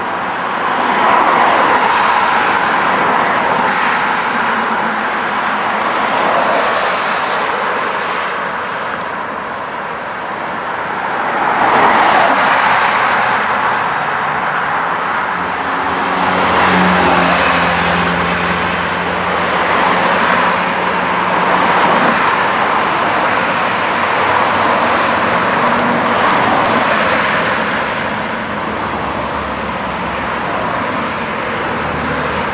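City street traffic: a continuous wash of tyre and engine noise that swells as cars pass every few seconds. About halfway through, a low steady engine hum joins for several seconds.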